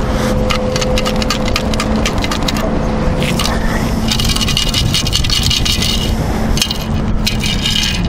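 Metal beach sand scoop digging into sand in repeated scraping strokes, then, about halfway through, lifted and shaken so the sand rattles out through its perforated basket. A steady low hum runs underneath.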